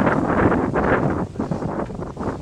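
Wind buffeting the microphone: a loud rush of noise for the first second or so, then easing.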